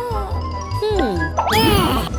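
Cartoon character voice effects: a few short squeaky gliding cries, one sweeping sharply up in pitch near the end, over background music with a repeating low bass note.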